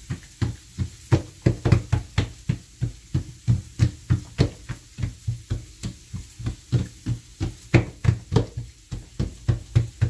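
Hands patting and pressing a thin sheet of oiled msemen-style dough out against a stone countertop, a quick even run of soft thumps about four a second.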